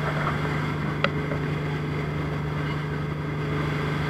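Speedboat running fast over choppy water: a steady engine drone under the rush of water and wind, with a single sharp knock about a second in.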